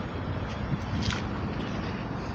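Steady low rumble and hiss, with a few soft footsteps about half a second apart.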